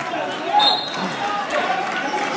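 Spectators' voices and shouts in a gymnasium at a wrestling match, with scattered thuds, and one louder shout about half a second in.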